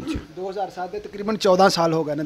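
A man talking: speech only.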